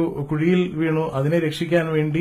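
A man's voice over a microphone, talking continuously in a lecture.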